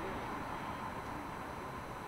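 Steady city street background noise: an even hum and hiss with no distinct events.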